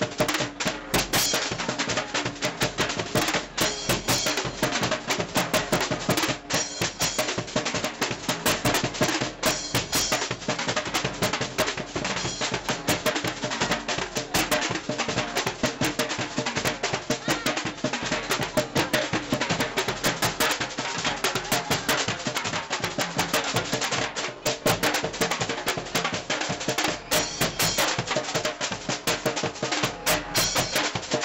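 Drums playing without a break: rapid snare-drum strikes and rolls over bass drum beats, with crowd voices underneath.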